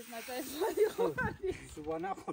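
People talking in the local language, over a faint hiss of threshed wheat grain pouring off a shovel onto a pile.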